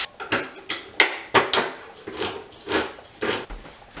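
Metal food can knocked repeatedly against a stainless steel cooking pot as diced tomatoes are emptied into it, about nine sharp, irregular knocks.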